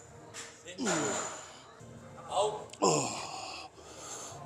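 A man grunting and breathing hard as he rows a heavy dumbbell: two forceful exhalations, about a second in and near three seconds in, each falling in pitch, alongside a rep count and a laugh.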